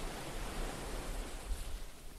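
Steady hiss of small waves lapping at a shoreline, over a low rumble.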